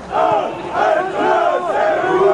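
Crowd of football spectators shouting, many voices overlapping loudly.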